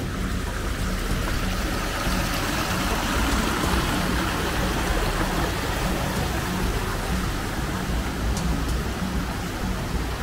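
Small mountain stream running over rocks: a steady rushing of water.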